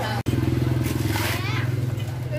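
A motorcycle engine idling steadily close by, a low even hum; the sound cuts out for an instant shortly after the start.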